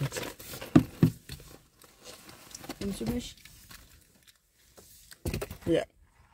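Rustling and handling noises with a couple of sharp knocks about a second in, among snatches of quiet, mumbled speech inside a car.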